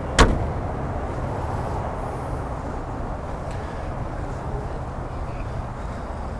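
Chevrolet Corvette Stingray's 6.2-litre LT1 V8 idling steadily. A single sharp thump comes just after the start.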